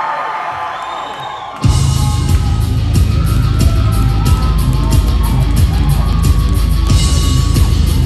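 Crowd yelling and whooping in a concert hall, then about two seconds in a live heavy rock band comes in suddenly and loudly with electric guitars, bass and drums hitting in a steady rhythm.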